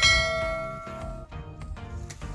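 A bell-chime notification sound effect from a subscribe-button animation, struck once right at the start and ringing out, fading over about a second, over background music.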